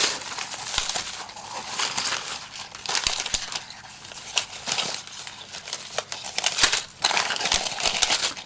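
Plastic packaging, bubble wrap and foil anti-static bags, crinkling and crackling as electronics parts are pulled out of a cardboard box.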